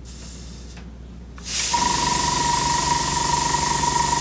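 An airbrush opens with a sudden loud hiss of air about a second and a half in, and a moment later the Sparmax Power X high-pressure compressor switches itself on as air is drawn, its motor running with a steady whine and low hum under the hiss.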